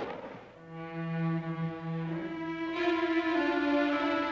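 Orchestral score of bowed strings playing slow, sustained notes, with new notes entering near the end. At the start, the tail of a gunshot's echo fades away over the first half second.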